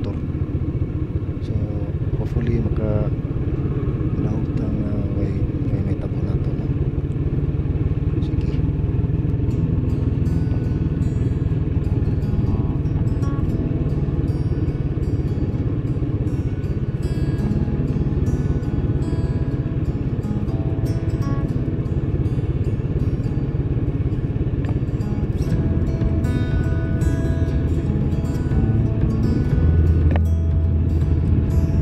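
Cafe-racer motorcycle riding along, its engine running steadily as a continuous low rumble, with music playing over it.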